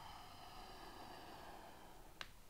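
Near silence: a faint, soft hiss that fades out near the end.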